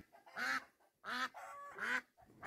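White domestic ducks quacking: three short, nasal quacks about two-thirds of a second apart.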